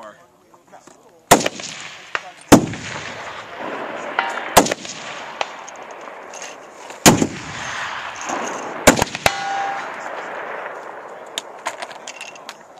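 Two Barrett .50 BMG rifles, a semi-automatic M82A1 and a bolt-action M99, firing about six irregularly spaced, very loud shots, each followed by a long echo. Faint metallic pings follow two of the shots by about one and a half to two seconds.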